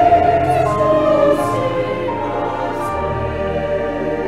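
Choir singing slowly in long held notes, the level gradually dropping.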